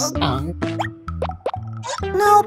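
Cartoon sound effects: a few quick upward pitch slides over children's background music.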